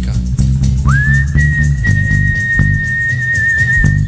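Live worship band music with bass guitar and drums keeping a steady beat. About a second in, a single high whistling tone slides up and holds for about three seconds, wavering slightly before it stops near the end.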